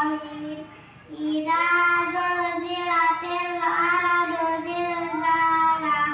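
A young girl's solo voice chanting melodically into a microphone in long, held notes, unaccompanied. She pauses for breath about half a second in and picks up again just under a second later.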